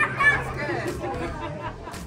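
Indistinct chatter of a small group of people talking over one another, one voice a little louder near the start.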